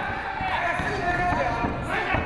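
Raised voices calling out during a live MMA bout, with a few brief dull thuds from the fighters in the ring.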